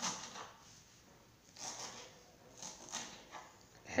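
Fresh parsley being cut with a knife on a wooden cutting board: a few separate short cutting strokes.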